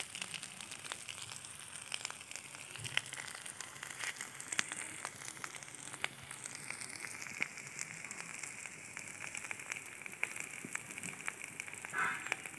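Onions and spice paste frying in mustard oil in a metal karahi: a steady low sizzle with many small crackling pops.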